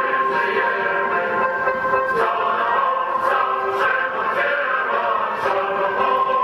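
A group of people singing together, with long held notes.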